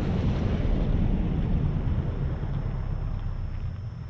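A car passing along a snow-covered street, its low rumble easing off toward the end, with wind buffeting the microphone.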